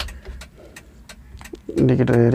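A run of quick, light clicks from the dashboard controls of a mini truck's cab as they are handled, with a man's voice starting near the end.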